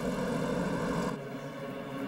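Streetcar running past along a city street, a steady hum over traffic noise; a little over a second in the sound drops to a quieter, duller hum.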